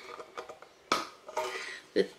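A metal tea tin being handled: a few light clicks and knocks, the sharpest about a second in and another at the end, over faint rustling.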